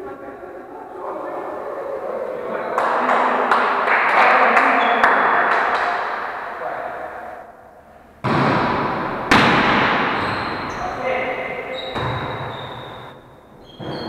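Volleyball rally in a large, echoing gym: players' voices and calls, the ball struck and thudding, with two loud sharp hits about eight and nine seconds in. Sneakers squeak briefly on the wooden floor near the end.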